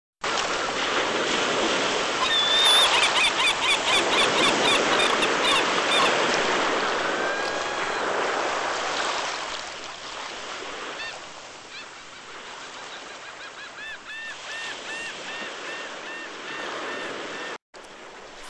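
Surf breaking against rocky sea cliffs, a steady rush that is loudest for the first half and then eases off. Seabirds call over it in two runs of quick repeated notes. The sound cuts off abruptly just before the end.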